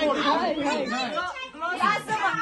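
Speech only: several people talking in Romanian, with no other distinct sound.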